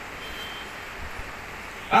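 Steady background noise in a pause between speech, with a faint, brief high-pitched beep shortly after the start.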